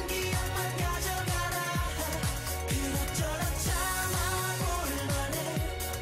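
K-pop song: male vocals over a steady kick-drum beat.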